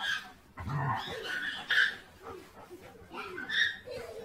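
Two dogs play-fighting, letting out a few short bursts of growls and whiny yips, with a deeper growl about a second in.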